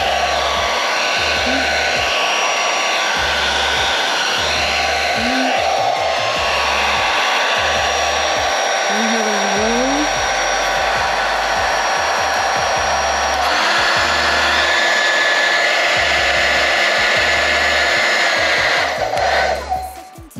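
A 1600-watt handheld hair dryer running steadily, its motor whine and airflow drawn from a 1500-watt inverter that carries the load without cutting out. About two-thirds through its pitch steps up and it grows slightly louder, and it switches off just before the end, with gusts of its air buffeting the microphone throughout.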